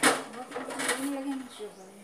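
A brief breathy hiss, then a person's soft, low voice murmuring quietly for about a second.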